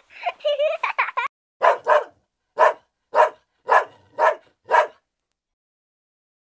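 A dog barking seven times in short, separate barks spaced about half a second apart.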